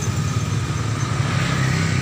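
Road traffic of motorcycles and cars running steadily, with a low engine rumble and a noisier swell in the second half as a vehicle draws nearer.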